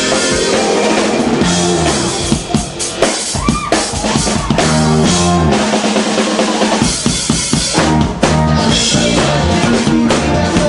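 Indie rock band playing loudly and live: a drum kit with cymbals driving over electric guitar and bass. About two seconds in the playing thins out briefly and sliding, bending pitched tones come through before the full band returns.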